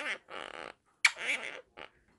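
Blue Quaker parrot making a few short, raspy, breathy noises in quick succession.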